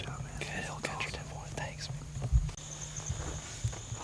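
A man whispering, too softly for words to be made out, with one dull bump about halfway through. A faint, steady high tone comes in just after the bump.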